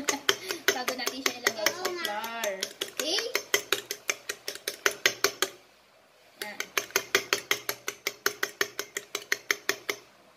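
Fork beating raw eggs in a ceramic bowl, the tines clicking against the bowl about six times a second. The beating stops for just under a second a little past halfway, then starts again.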